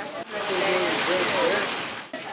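Rainwater pouring off the edge of a building awning in a thick stream during a heavy downpour, a steady rushing splash "like a waterfall". It starts about a third of a second in and eases off near the end, with voices faint beneath it.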